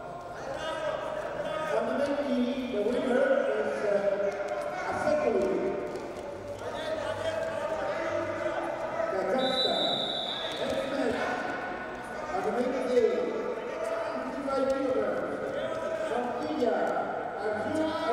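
Men's voices calling out across a large hall during a standing Greco-Roman wrestling bout, with dull thuds and scuffs of the wrestlers' feet and bodies on the mat. A short, high, steady tone sounds about halfway through.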